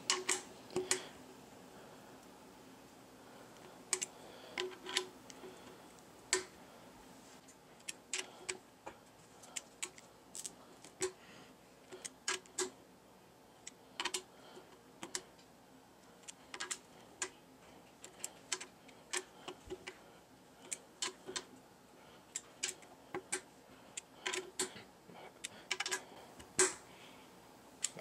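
Irregular small clicks and ticks, some in quick pairs, of a metal Allen key being seated in hex socket screws and turned against their washers, the screws on a mounting plate tightened a little at a time in turn.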